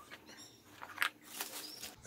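A few faint, soft clicks and rustles from handling the spoon, worms and soil, spaced irregularly.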